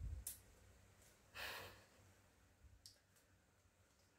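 Near silence, broken about one and a half seconds in by a single short breath out, a sigh-like puff of air. A few faint clicks come near the start and around three seconds in.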